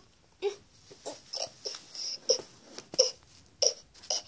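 A small child's short whimpering cries: about six brief sobs spread over a few seconds, with quiet gaps between them.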